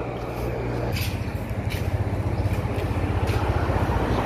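Low rumble of a motor vehicle engine running close by, growing louder about a second in, with a few faint clicks over it.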